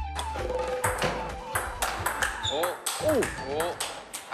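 Table-tennis rally: the ball clicks sharply off paddles and table in quick, irregular succession, with voices exclaiming partway through.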